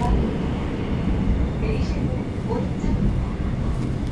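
Inside a Seoul Metro Line 9 subway car while the train runs between stations: a steady low rumble of wheels and carriage, with faint voices in the background.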